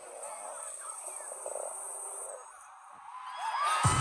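Arena concert crowd cheering and screaming, with voices and high cries rising about three seconds in. Loud bass-heavy music comes in just before the end.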